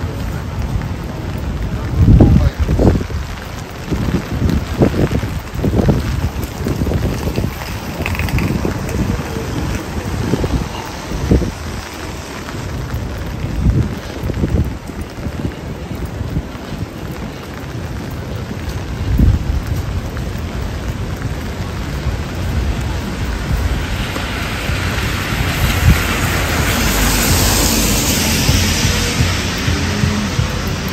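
Rain falling on a wet paved city street, with irregular gusts of wind buffeting the microphone through the first half. In the last few seconds a louder hiss swells up.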